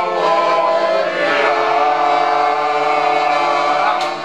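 Several voices singing together in long, drawn-out notes, with music underneath.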